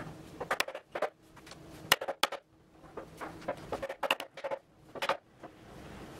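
Mallet tapping a breadboard end down onto the tongue on top of an ash panel to seat it: a series of sharp knocks, often in quick pairs, a second or so apart.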